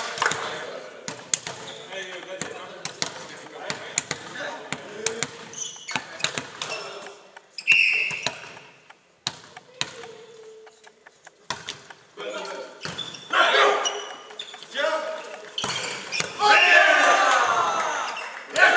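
A volleyball bouncing and being struck on a sports-hall floor, with short sharp knocks throughout. A referee's whistle blows briefly about eight seconds in. Players shout loudly in the last few seconds.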